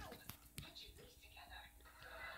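A person whispering faintly, with a couple of soft clicks early on.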